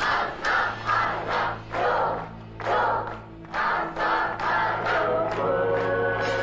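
A group of voices chanting in short rhythmic shouts, about two a second, over music with a steady low drone. About five seconds in, the chant gives way to held sung notes.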